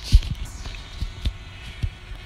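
Several low, dull thumps on the microphone, the first and loudest just after the start, over a faint steady hum.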